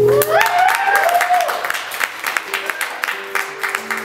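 A final acoustic guitar chord cuts off right at the start, followed by hand clapping with a rising, wavering whoop in the first second and a half as the song ends.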